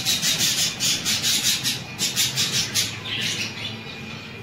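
Caged pet birds calling in rapid, high-pitched chirps, about six a second, in two runs that break off at about two seconds and again about three seconds in.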